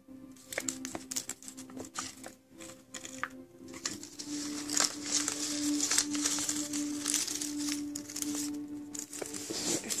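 Sheets of printer paper in an origami flasher rustling and crinkling as it is twisted open and folded back by hand, with many small sharp crackles. The crinkling gets denser and more continuous about halfway through, as the model is spread open. A steady low tone runs underneath.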